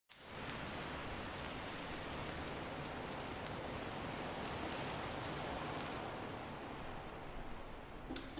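A steady hiss of noise, like rain or static, fading in at the start and easing off slightly near the end.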